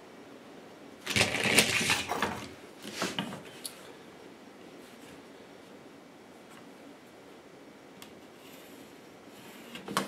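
Metal measuring tools handled on a wooden workbench: a rattling clatter lasting about a second and a half, a shorter clatter and a click, then a long quiet stretch with a single click near the end.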